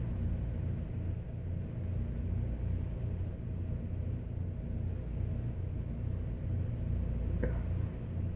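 A straight razor scrapes through stubble on the chin in short, faint strokes over a steady low rumble of background hum.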